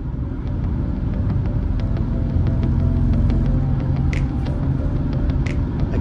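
Cabin sound of a BMW E83 X3 driving at road speed: a steady low rumble of engine and road noise with a few steady engine tones, growing a little louder about two seconds in. A couple of faint ticks come near the end.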